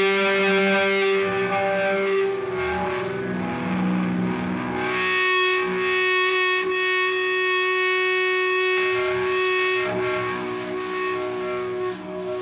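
Distorted electric guitar played through effects pedals, holding long ringing notes as a drone, shifting to new held notes about five seconds in and easing off near the end.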